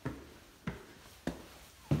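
Footsteps at a walking pace, four steps about two-thirds of a second apart, the last one the loudest.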